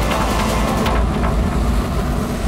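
Busy city street traffic: motor scooters and motorcycles passing close by over a steady low rumble of engines.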